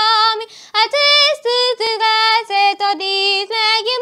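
A young girl singing a national anthem solo and unaccompanied, holding long sung notes with short pauses for breath between phrases.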